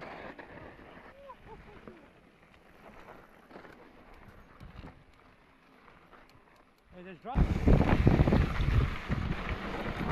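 Mountain bike rolling over a dirt trail, faint tyre noise and small rattles, then about seven seconds in a sudden jump to loud wind buffeting on the handlebar camera's microphone with trail rattle, and a shout of "drop!".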